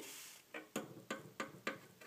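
Miniature finger BMX bike's small plastic and metal wheels and frame clicking and tapping against the ramp as it rides up and perches on its front wheel, about six light clicks in two seconds.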